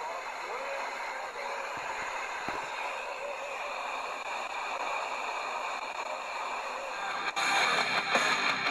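Weak FM broadcast in the OIRT band coming through a Tecsun PL-310's speaker: a faint Tatar song on 67.7 MHz buried in hiss and fading noise, with a few crackles. About seven seconds in, the radio is retuned and a stronger station comes in suddenly with much louder music.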